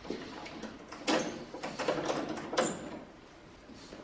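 Clothing rustling as a man pulls up and fastens his jeans: a few short swishes of fabric, with a light metallic clink of the buckle or button about two and a half seconds in.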